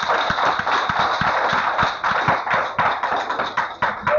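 Audience applause, a dense crackle of many hands clapping, heard on an old cassette recording with a faint steady high tone running under it.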